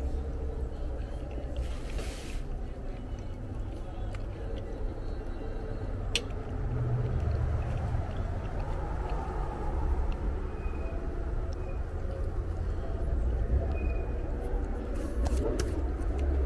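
Steady low rumble of outdoor background noise, with a single sharp click about six seconds in.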